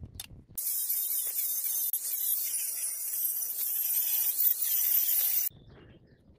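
A loud, steady, high-pitched hiss that starts suddenly about half a second in and cuts off abruptly near the end.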